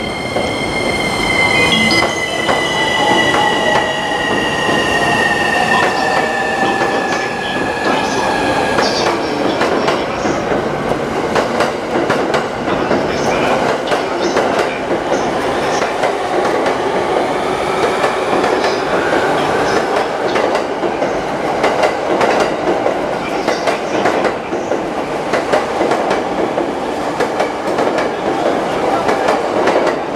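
JR East E231 series electric train pulling out of a station: high whining tones glide slowly down in pitch over the first nine seconds, over a steady rumble and repeated clacks of wheels over rail joints as the cars roll past.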